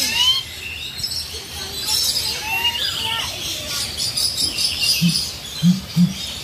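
Birds chirping, with short high whistled notes, then a low call repeated about twice a second starting near the end.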